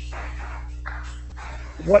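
Steady electrical hum on a video-call audio line, with a few faint soft noises and a spoken word starting near the end.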